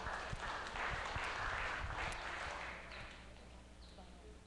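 A congregation clapping, the applause dying away about three seconds in.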